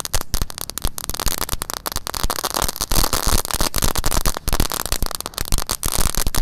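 A pack of crackling firework eggs (telur dino pratek) going off at once on the ground: a dense, rapid, irregular run of sharp snaps and pops.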